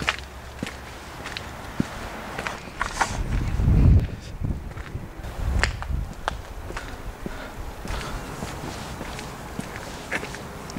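Footsteps of a person walking on pavement, with scattered irregular clicks and rubbing from a handheld camera swinging while he walks. A brief low rumble swells and fades about three to four seconds in, the loudest sound here.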